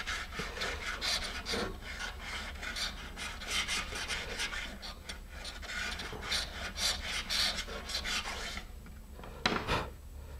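Fine-grit sandpaper glued to a half-inch wooden dowel rubbed back and forth along a cured epoxy fin fillet on a fiberglass rocket tube, a quick, steady run of rasping strokes that stops shortly before the end.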